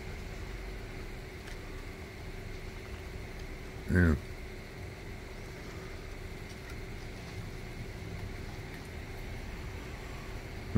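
A short voiced sound close to the microphone, a brief grunt falling in pitch, about four seconds in, over a steady low background hum.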